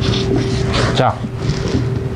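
Microfiber towel being rubbed briskly over the sanded surface of a worn leather sofa cushion to wipe off sanding dust, making a steady scrubbing noise over a constant hum.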